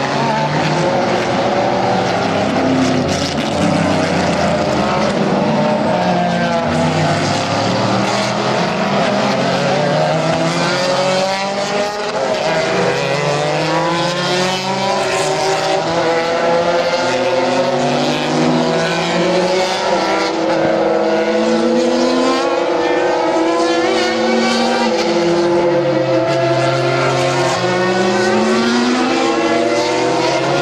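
Several endurance sports racing cars passing through a corner one after another. Their engine notes overlap and repeatedly fall and rise in pitch as they slow for the bend and accelerate away, a continuous loud racket of engines.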